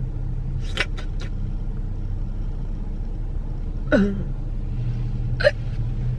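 Steady low hum of a car's engine idling, heard from inside the cabin, with a few faint clicks about a second in and a brief falling vocal sound, like a hiccup, about four seconds in.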